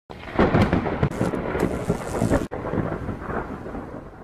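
A loud rumbling, crackling noise effect that cuts out for an instant about halfway through, then comes back and fades away toward the end.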